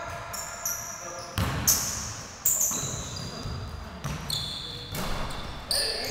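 A basketball bouncing a few times on a hardwood gym floor, with short high-pitched sneaker squeaks in between.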